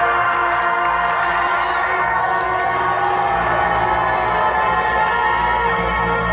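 Sustained, droning ambient music over a live-concert PA system, with a crowd cheering and shouting over it.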